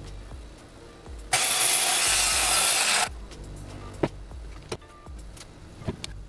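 Short burst of a Craftsman circular saw cutting a wooden board, starting and stopping abruptly about a second in and lasting under two seconds, over background music. A few sharp clicks follow near the end.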